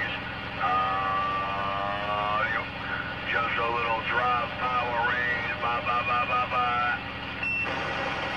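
A voice coming in over a CB radio's speaker from another station, sliding up and down in pitch and holding long notes rather than talking, with a steady hum under it.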